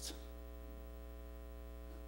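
Steady electrical mains hum from the sound system, with a faint buzz of higher overtones.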